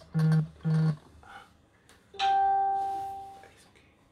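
Two short buzzes in quick succession, then a single bell-like chime that rings out and fades over about a second and a half.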